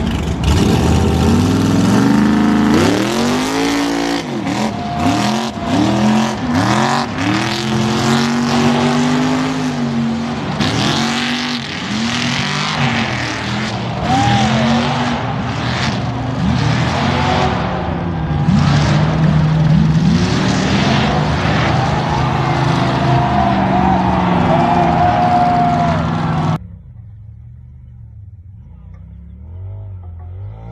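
Truck engines revving hard in repeated surges, pitch climbing and dropping again and again, under a dense hiss of noise. About 26 seconds in the sound cuts abruptly to a much quieter running engine.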